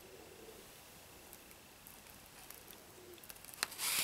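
Newsprint page of a 1983 comic book being handled and turned: soft paper rustling and crackling that starts faint about three seconds in and grows louder near the end.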